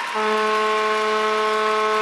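Arena goal horn sounding one long, steady-pitched blast, signalling a goal by the home team.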